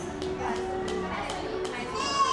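Young children's voices and adults' chatter mingling in a room, with a few light knocks.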